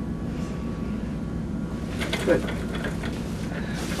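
Steady low room hum, with faint rustling and a short murmured sound from about halfway through.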